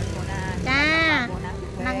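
A high voice chanting long, drawn-out syllables, one rising and falling about two-thirds of a second in and a second one held near the end, over a steady low rumble.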